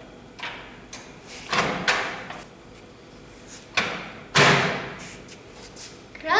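A countertop microwave oven with dial controls being worked: a series of separate clunks and thuds as its door and knobs are handled, the loudest about four and a half seconds in.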